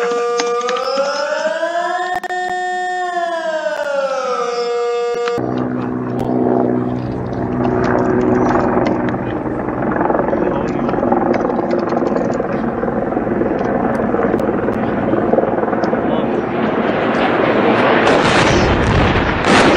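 Recorded emergency alarm audio: a Swiss civil-defence siren wails with a slow rise and fall in pitch and cuts off abruptly about five seconds in. It is followed by a dense, noisy rumble with a low steady drone that sounds like a helicopter.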